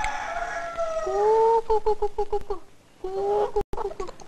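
Chickens calling. A long drawn-out call is followed, about a second and a half in, by a quick run of short clucks, and another call comes near the end.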